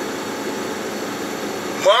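Steady hum of a semi-truck's engine idling, heard from inside the cab.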